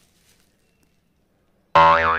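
Near silence. Near the end, a loud, drawn-out call with a wavering, sing-song pitch starts suddenly: a person's voice calling "Gogga".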